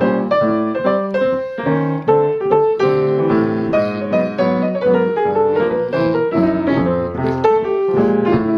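Acoustic grand piano playing jazz solo piano with both hands, a moving bass line under chords and melody, continuous throughout.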